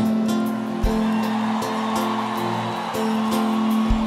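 A live band playing soft held chords that change a few times, under steady stadium crowd noise, with two low thumps, one about a second in and one near the end.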